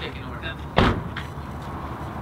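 A single sharp thump about a second in, followed by a faint click.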